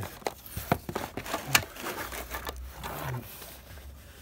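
Aerosol spray cans of pruning sealer being handled in a cardboard box: a few sharp knocks and clicks of the cans against each other and the box, the loudest about one and a half seconds in, with some scraping between them.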